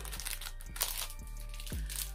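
Clear plastic sleeves on makeup brushes crinkling a few times as they are handled, over faint steady background music.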